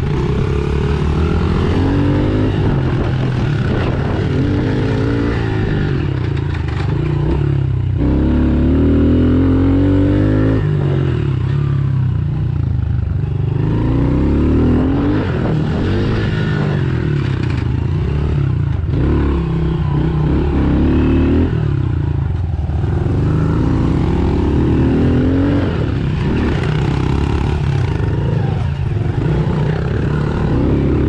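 Honda CRF110 pit bike's small single-cylinder four-stroke engine, heard from on board, revving up and backing off over and over as it is ridden round a dirt track.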